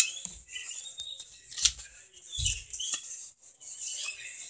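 Faint rustling and small clicks of handling, with a brief louder rustle about one and a half seconds in and a low thump a second later.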